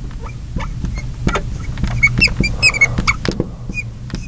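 Marker squeaking and tapping on a glass lightboard as words are written: a run of short, high squeaks and light ticks over a steady low hum.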